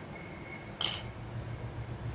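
A single short, sharp clink about a second in, over the steady low rush of a lit gas stove burner heating a steel kadhai.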